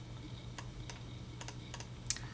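A few scattered clicks at a computer, over a steady low hum.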